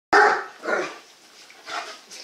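Great Dane barking in play: two loud barks within the first second, then a softer one near the end.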